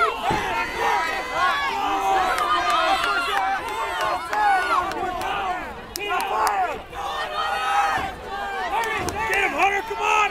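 Boxing crowd yelling and cheering during a bout, many voices shouting over one another.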